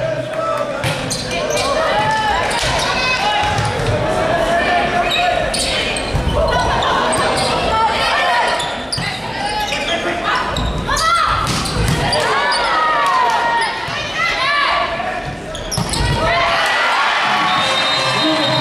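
A volleyball rally in an echoing indoor hall: sharp hits of the ball and sneakers squeaking on the wooden court, over players' calls and crowd noise.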